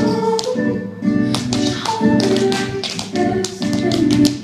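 Dance shoes tapping sharply and rapidly on a wooden stage floor over recorded music.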